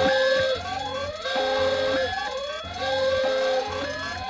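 Home security alarm going off: a repeating electronic cycle of a held steady tone followed by rising whoops, about three cycles in four seconds.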